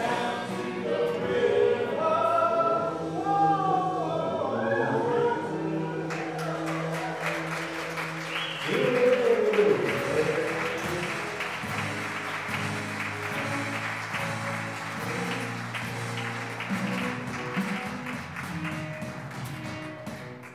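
Praise band of voices, violin, electric guitar and piano singing and playing; about six seconds in, applause starts and runs on over the band's held chords, with a loud vocal sound rising above it near the middle.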